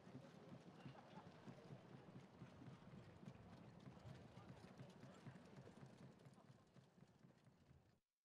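Faint hoofbeats of a Standardbred trotter jogging on a dirt track while pulling a sulky, an uneven patter of hoof strikes that fades out near the end.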